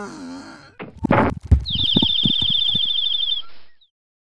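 Cartoon sound effects: a short whimpering character voice, then a rushing burst with a few thuds about a second in, followed by a rapid high warbling whistle lasting nearly two seconds.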